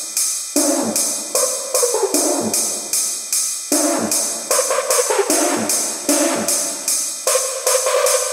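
Hard techno track in a breakdown: the kick drum and bass are gone, leaving steady, fast hi-hat-style percussion and short synth tones that fall in pitch, repeating every second or so.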